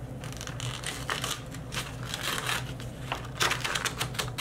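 A paintbrush scrubbing over a sketchbook's paper, and the paper rustling as the page is handled: an irregular run of short, scratchy, crinkling noises.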